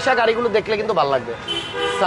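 A vehicle horn sounding a steady, unbroken blare that starts about one and a half seconds in, following a man's voice.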